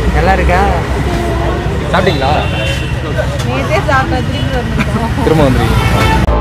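People talking, with a steady low rumble of street traffic underneath.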